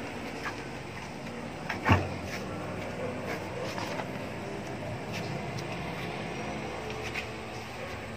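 Wooden hive box being handled: one sharp knock about two seconds in and a few faint clicks over a steady low hum.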